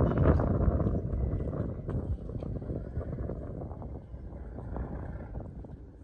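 Wind rumbling on the microphone, loudest near the start and dying down toward the end.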